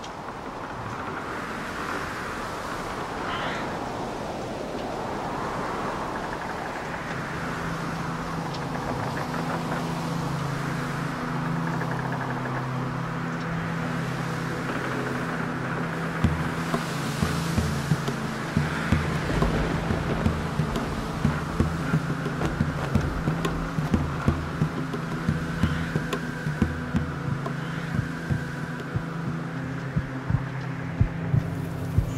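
Dark ambient film soundtrack: a rushing, noisy wash with wavering high pitches, joined about a quarter of the way through by a steady low drone, and from about halfway by repeated sharp knocks.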